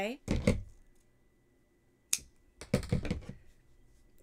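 Hands handling a crocheted piece and a metal yarn needle close to the microphone: two short rustling bursts and one sharp click about two seconds in.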